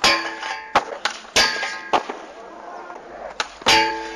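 Skateboard striking a metal handrail in a string of sharp knocks and clangs. The two loudest, about a second and a half in and near the end, leave the rail ringing briefly.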